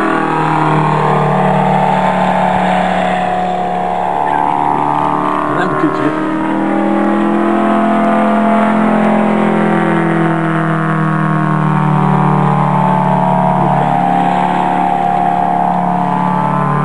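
Radio-controlled model airplane's engine running hard in flight, its pitch rising and falling several times as the plane passes and manoeuvres.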